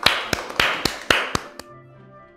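A quick run of about seven sharp percussive hits, roughly four a second, that stops after about a second and a half. Soft, sustained background music follows.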